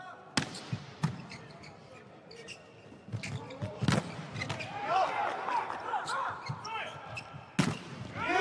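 A volleyball being struck hard in a rally: a jump-serve slap soon after the start, another hit about a second in, one near four seconds and a loud spike hit just before the end, each a sharp slap. Short voices or shoe squeaks come between the hits.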